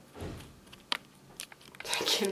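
Faint handling noise from a hand-held camera: a soft low thump about a quarter second in, then a few small clicks, the sharpest about a second in.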